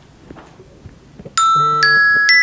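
Near silence, then about 1.4 seconds in a bright electronic chime melody starts, marimba-like notes about every half second, like a phone alarm tone.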